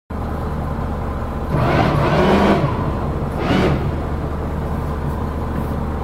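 The Cutwater 30's single inboard engine idling at the dock, a steady low hum heard from inside the cabin. Two louder surges of noise come over it, one about one and a half seconds in lasting about a second, and a short one about three and a half seconds in.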